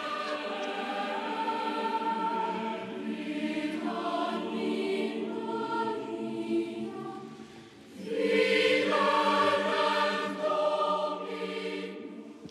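A choir singing a slow hymn with long held notes. It fades almost away about eight seconds in, then comes back in fully.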